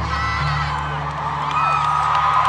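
Arena audience screaming and cheering over a low, steady bass note from the concert's sound system; the screaming swells about one and a half seconds in.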